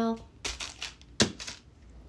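Plastic energy-bar wrapper crinkling and rustling as one bar is put aside and another reached for, in short bursts with one sharp tap a little after a second in.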